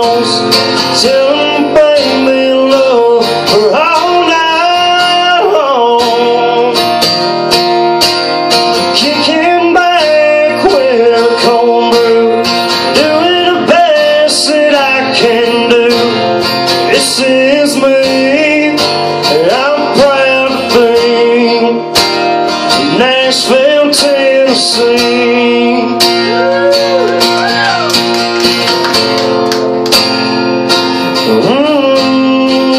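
A man singing a country song live to his own strummed acoustic guitar.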